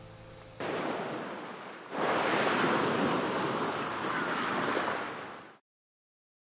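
Steady rushing noise like surf or wind, in two parts: it starts suddenly about half a second in and fades slightly, then comes back louder at about two seconds and cuts off abruptly near the end.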